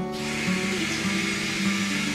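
Water running from a tap into a sink, a steady hiss that starts abruptly and stops abruptly about two seconds later, over guitar background music.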